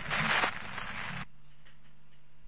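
Police scanner radio recording between transmissions: the hiss of the open channel, which cuts off abruptly a little over a second in, leaving a faint steady low hum.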